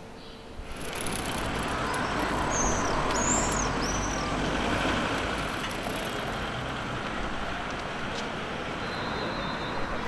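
City street traffic: a steady wash of passing cars and trucks that swells in about a second in and then holds. A few short high chirps sound over it about a third of the way through.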